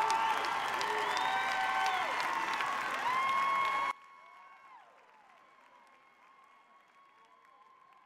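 Live audience applauding and cheering with whoops at the end of a spoken-word performance. The sound drops suddenly to a faint level about four seconds in, with faint cheering going on.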